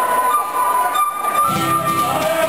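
Live folk band playing dance music: a held melody line, with guitar and lower notes filling in about one and a half seconds in.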